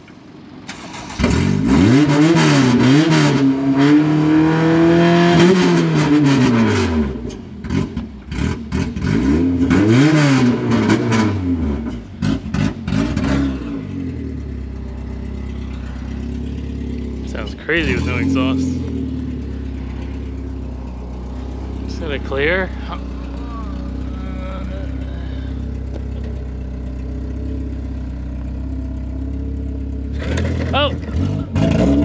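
Honda Civic coupe's engine revved in several blips, each rising and falling in pitch over a second or two, then settling into a steady idle about halfway through.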